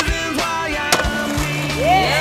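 Music track with sustained bass and pitched tones, over a skateboard's sounds, with one sharp clack about a second in, the board landing.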